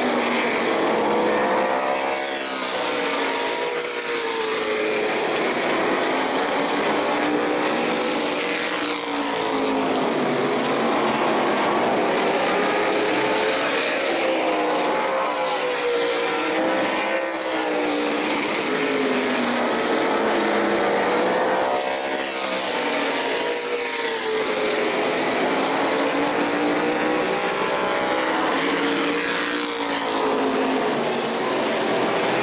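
Modified stock cars' V8 engines running around the oval, the engine note rising and falling again and again as the cars pass by.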